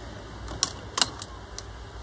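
Two light, sharp clicks about half a second apart, with a few fainter ticks around them: small hard objects being handled on a work table.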